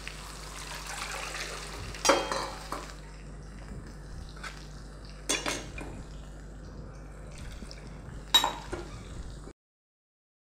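Tamarind water poured from a steel bowl through a wire-mesh strainer into a steel pot, then steel vessels clinking sharply three times as the bowl and strainer are handled. The sound cuts off suddenly near the end.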